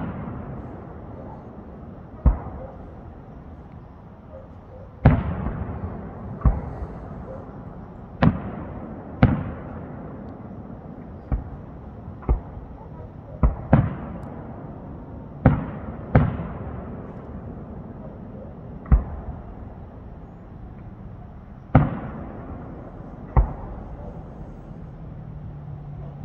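Aerial firework shells bursting one after another, about fifteen sharp booms at irregular gaps of one to three seconds, some with a trailing rumble.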